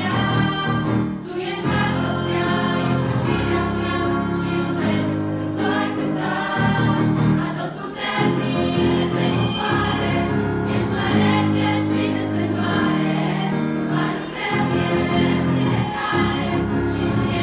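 A girls' choir singing a Christian song with instrumental accompaniment, the voices held over sustained low notes.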